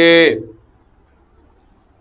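A man's voice holds out the end of a word for about half a second, then quiet room tone for about a second and a half.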